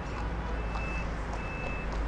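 A vehicle's reversing alarm sounding: short high electronic beeps repeating on and off, over a low steady rumble.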